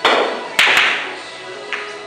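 Sharp clicks of pool balls striking: one at the start, two in quick succession a little over half a second in, and a softer one near the end. Background music plays underneath.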